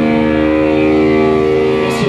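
Live rock band holding one long, steady sustained chord, likely from distorted electric guitar, with a cymbal and drum hit just before the end as the band comes back in.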